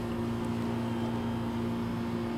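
Steady electrical hum with a faint hiss underneath: the background room tone of the narration recording.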